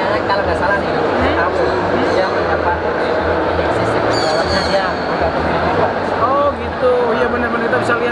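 Men talking close up over the steady murmur of voices in a busy indoor exhibition hall.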